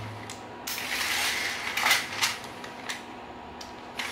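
Line being drawn out of a Tajima chalk-line reel: a dry rustling run of the line followed by a few sharp clicks from the reel's mechanism.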